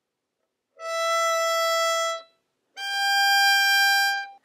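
Violin playing two long bowed notes, an E and then a slightly higher G, each about a second and a half, with a short silence between them. This is the E-to-G bow change from the A string to the E string, practised with a stop at the middle of the bow.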